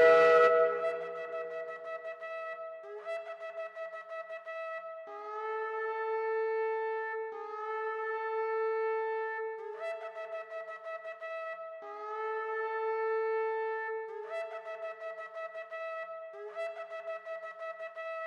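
Shofar-like horn tones held in phrases of about two seconds, alternating between a lower and a higher pitch.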